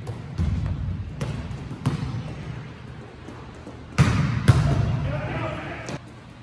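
Volleyballs being struck and bouncing on a hardwood gym floor: sharp smacks every second or so, the loudest pair about four seconds in, in a large echoing gym.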